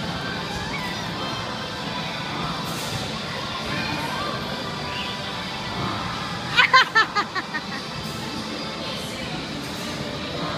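Steady background noise of an indoor children's play area with music playing, broken a little over halfway through by a quick run of about six short, high-pitched child's squeals.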